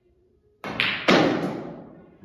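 Snooker shot: the cue tip strikes the cue ball, followed by sharp clacks of ball hitting ball and cushion. The loudest knock comes about a second in and fades out over most of a second.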